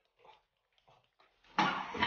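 A few faint spoon clinks in a plate, then about a second and a half in a man lets out a loud, harsh cry.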